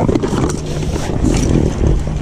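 Wind buffeting the microphone and water splashing against the side of an inflatable boat as a landing net is worked in the water, over a low steady hum.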